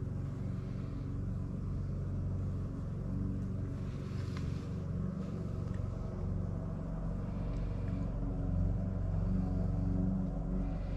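A steady low hum and rumble with no clear change.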